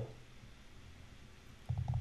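Faint low hum from a voice microphone, then a short low vocal sound from the narrator near the end.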